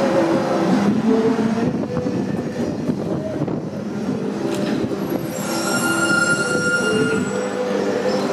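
Street traffic noise with a steady engine drone from buses pulling away. About five seconds in, a high-pitched metallic squeal holds for about two seconds.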